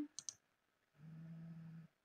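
Two quick computer-mouse clicks on calculator buttons, then a faint, short steady hum with a low pitch near the end.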